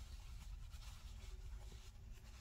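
Faint rustling and scratching of a 6 mm metal crochet hook working through chunky chenille blanket yarn while a decrease stitch is made on a stuffed plush.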